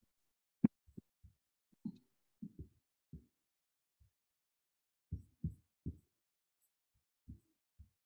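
A sharp computer-mouse click about half a second in, then a scattered run of faint, short low thumps from handling at the desk, picked up by a video-call microphone that gates the quiet between them.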